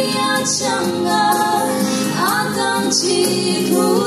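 A woman singing a slow song into a microphone over steady instrumental accompaniment, amplified through the hall's loudspeakers; her voice glides upward about halfway through.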